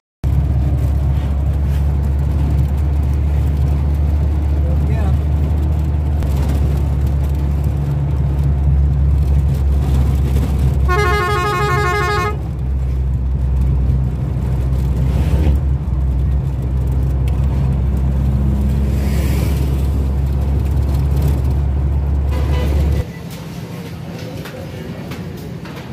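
Steady low rumble of a moving road vehicle heard from on board, with a horn sounding one pulsing honk of about a second, about eleven seconds in. The rumble stops suddenly near the end.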